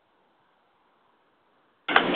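Faint hiss on a recorded 911 phone line with nobody speaking, then near the end a woman dispatcher's voice cuts in abruptly and loudly, thin and narrow as heard through a telephone.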